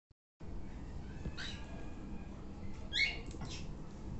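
Short rising bird chirps from caged birds: one about a second and a half in, then a louder cluster of three or four around three seconds, over a low steady background rumble.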